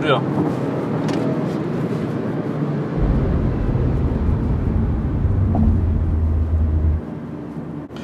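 Cabin noise of a Renault Clio V 1.3 TCe turbo petrol car at a steady cruise of about 100 km/h: a steady hum of engine, tyres and wind. A deeper low rumble joins about three seconds in and cuts off abruptly about a second before the end.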